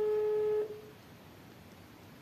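Ringback tone of an outgoing phone call played through a phone's loudspeaker: one steady beep that stops under a second in, while the call rings unanswered.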